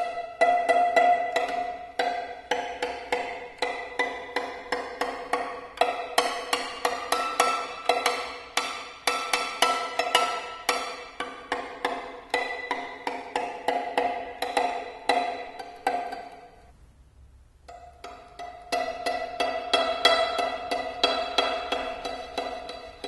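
Amplified prepared violin whose strings are struck over and over with a rolled paper tube instead of a bow, giving a rapid run of dry, percussive taps, each ringing briefly on the open strings' pitches. The taps stop for about two seconds near the end, then start again.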